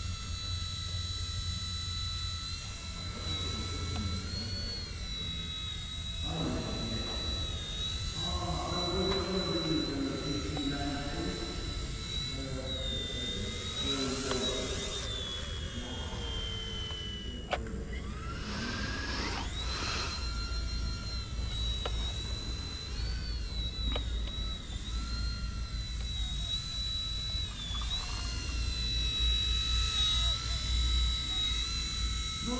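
Eachine E129 RC helicopter flying: a high-pitched motor and rotor whine that rises and dips in pitch as the throttle changes, with a climbing whine about two-thirds of the way through.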